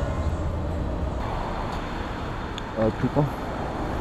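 Outdoor street ambience: steady road-traffic noise with a low rumble, and a brief voice about three seconds in.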